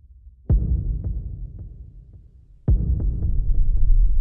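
Two deep, heavy booms about two seconds apart, each dying away in a long low rumble with faint ticks in the tail: trailer-style sound-design impact hits.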